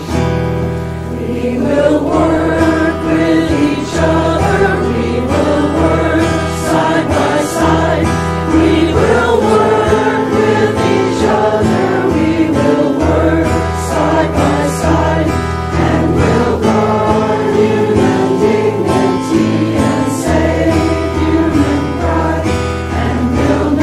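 A group of voices singing a hymn together, with instrumental accompaniment holding long sustained bass notes underneath.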